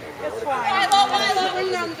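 People's voices talking and calling out, with one loud, raised voice from about half a second to a second and a half in.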